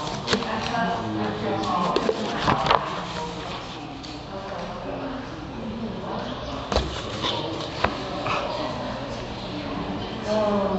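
Indistinct voices of people talking in the background, with a few sharp clicks and paper sounds as the pages of a book are handled and turned.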